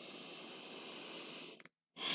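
A person's slow, faint audible breath, an even rush of air lasting about a second and a half. A brief silence follows, and a louder breath begins at the very end.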